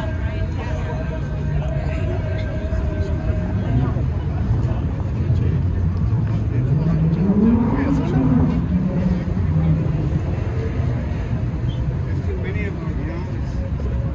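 Outdoor city street noise: a steady low traffic rumble with distant voices. Between about seven and nine seconds in, a pitched sound rises and then wavers.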